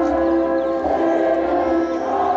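Choir singing a processional hymn, holding long sustained notes that move to a new chord about a second in.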